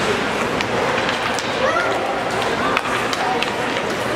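Ice hockey game sounds in an arena: skates scraping the ice under a steady hubbub, several sharp clacks of sticks and puck, and short shouts from players or spectators near the middle.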